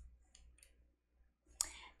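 Near silence broken by a few faint, short clicks, then a sharper click about one and a half seconds in followed by a brief breathy noise.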